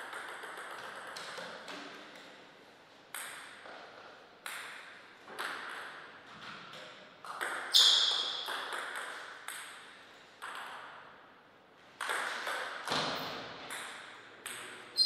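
Table tennis ball bouncing on the table and struck by the bats in a rally: a string of sharp, ringing clicks at uneven spacing, the loudest about eight seconds in.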